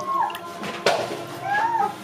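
Two short animal calls, each bending in pitch, one near the start and one late, with a sharp knock between them just before the middle.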